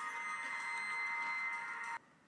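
Background music: steady held tones with no beat or bass, which cut off suddenly at the end.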